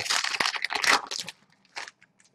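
Foil trading-card pack being torn open and crinkled by hand: a dense crackling tear for just over a second, then a short rustle near the end.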